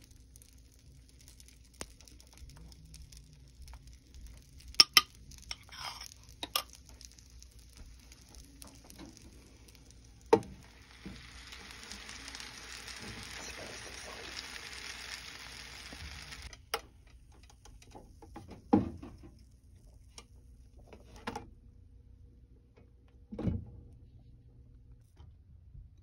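Dosa batter sizzling on the hot ridged plates of an electric contact grill, a steady hiss for about six seconds in the middle that cuts off suddenly. Scattered sharp clicks and knocks of a spoon, bowl and the grill's lid come before and after it.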